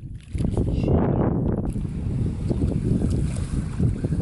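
Wind rumbling on the microphone, a steady low roar, mixed with water splashing and sloshing as hands scoop in a shallow sandy channel.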